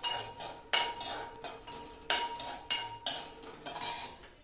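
Metal spoon stirring dry-roasting whole spices in a metal cooking pot, giving several sharp clinks against the pot about a second apart, with scraping between them.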